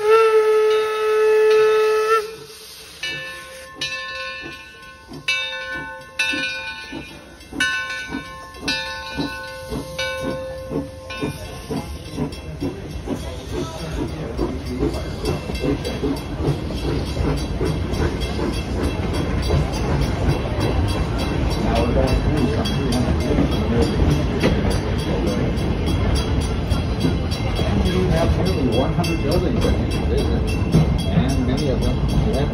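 A 0-6-4T steam tank locomotive blows its whistle in one long blast of about two seconds. Its bell then rings repeatedly over steady exhaust chuffs as it pulls away. From about twelve seconds in, its open passenger coaches roll past with a steady rumble and rapid clicking of wheels on rail that grows louder.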